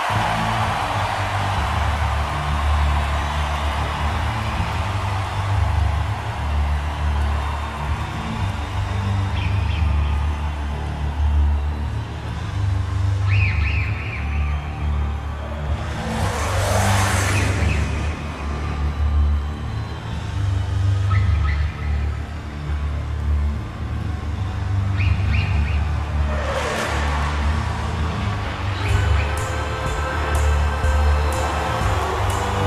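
Live arena rock song intro: a heavy, pulsing low bass throb with electronic whooshes sweeping down in pitch about halfway through and again near the end.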